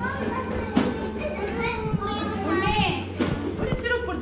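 Small children's high-pitched voices calling and babbling, mixed with adults talking, over a steady low hum.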